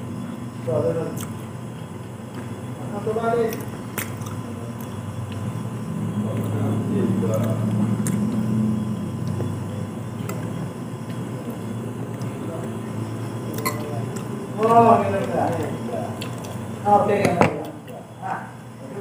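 A person chewing a mouthful of soft, sticky fermented rice (tape) in sweet syrup, with small wet mouth sounds and a few faint clicks, over short stretches of voice.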